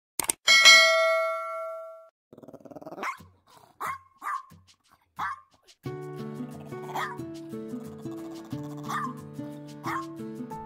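Two quick clicks and a loud bell-like notification chime from a subscribe-button animation, fading within about a second and a half. Then a small dog barks four times. About six seconds in, background music with a steady beat starts, and the dog keeps barking over it now and then.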